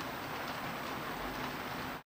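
Steady, even background noise of a machine shop, a low rumble and hiss with no distinct strikes or tones, cutting off abruptly at the end.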